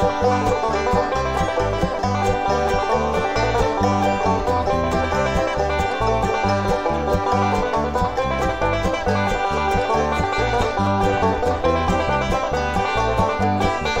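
A banjo picking an instrumental break between sung verses, backed by guitar, over a steady, even beat.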